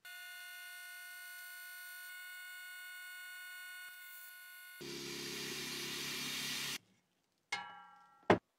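Vacuum pump running with a steady whine of several tones. About five seconds in it gives way to a louder hiss with a low hum, which cuts off suddenly near seven seconds.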